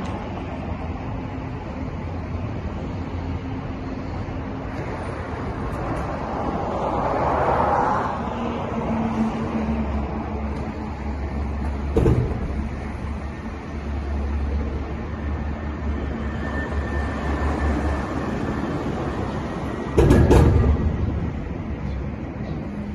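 Road traffic running under a concrete road overpass: a steady engine and tyre rumble that swells for a moment, with a sharp knock about halfway through and a louder short burst near the end.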